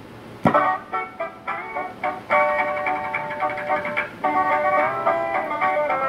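The first background-music tune from a custom CB radio's add-on sound box: a short electronic melody that opens with a click and a few quick notes, then moves into long held chords.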